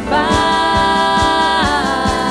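Worship song: a man singing into a microphone, holding one long note with vibrato for about a second and a half before his voice bends to the next note, over keyboard accompaniment and a light beat.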